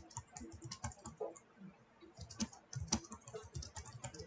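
Typing on a computer keyboard: a fast, irregular run of key clicks, briefly thinning out about halfway through.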